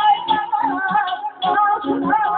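Azerbaijani ashiq song: a man singing into a microphone over amplified instrumental accompaniment, with a steady low beat about three times a second.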